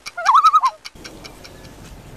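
Clock ticking sound effect with a short warbling whistle-like tone in the first second. After that a quieter steady background with faint clicks.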